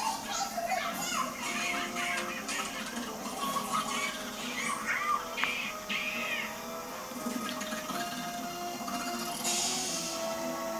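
Television audio playing in the room: music with steady tones, under high, squeaky, gliding voice sounds like a helium-raised voice.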